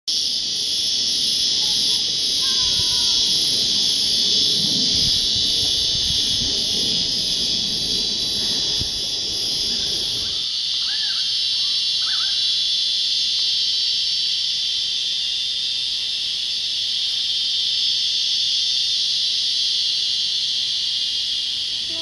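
Chorus of cicadas: a loud, even, shrill drone that does not let up. For the first ten seconds a second insect pulses about twice a second above it, with a low rumble on the microphone, and a few brief bird chirps come through.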